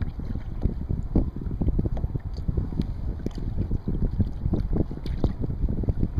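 Wind buffeting the microphone in uneven gusts, over choppy water slapping against a kayak's hull.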